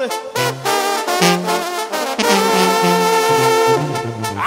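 Mexican banda brass band playing an instrumental passage: a bass line steps from note to note under the horns, which hold a long sustained chord near the end.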